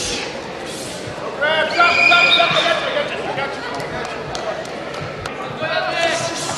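A loud, drawn-out yell about one and a half seconds in, over the murmur of a crowd echoing in a large hall, with a few sharp knocks scattered through.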